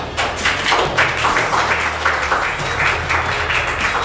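Quick, fairly even clapping that starts suddenly, with music underneath.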